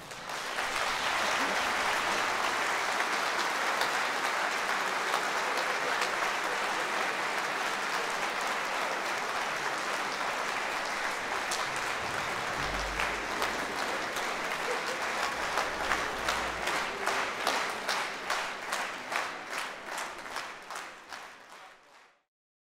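Large concert-hall audience applauding. In the last third the claps fall into a steady beat together, about two or three a second, and then fade out near the end.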